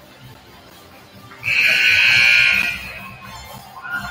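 Scoreboard horn giving one loud, steady electronic buzz of a bit over a second, sounding as the game clock runs out to end the period.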